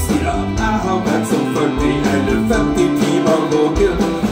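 Live band playing: a man singing into a microphone over electric guitar and the rest of the band.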